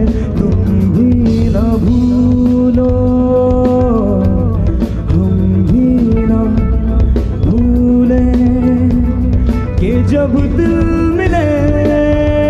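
Live band music: a male vocalist sings long, held, wavering notes over drums, bass and cymbals.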